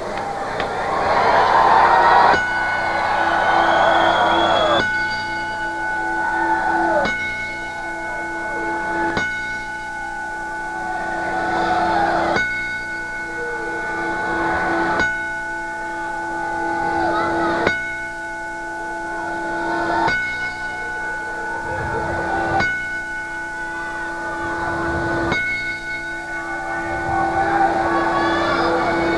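Wrestling ring bell tolled slowly in a ten-bell salute of mourning: about ten single strikes, one every two to three seconds, each left ringing into the next.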